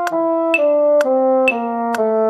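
Brass-toned playing of the trombone part of an F major scale, moving downward in smooth legato from the F above middle C, one note about every half second. A metronome clicks on each note, with a sharper click every second note.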